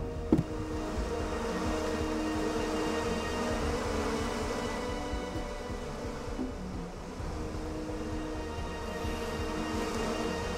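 A swarm of bees buzzing as a steady, dense drone, with a short knock just after the start.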